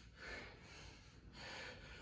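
A man breathing hard in faint, hissing breaths, about three in two seconds, as he gets his wind back after high-intensity exercise.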